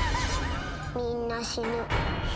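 Horror-trailer sound design: a high, wavering, voice-like warble over a low drone, then a short line in a flat, even-pitched voice in the second half.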